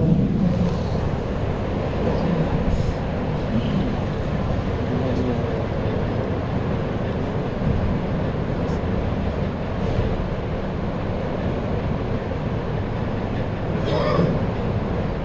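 Steady low rumbling background noise with no clear strokes or rhythm.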